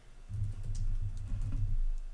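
Typing on a computer keyboard: a short run of quick keystrokes with dull thumps under them. It starts just after the beginning and stops near the end.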